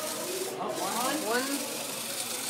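Small electric drive motors of an FTC competition robot whirring steadily as it is driven.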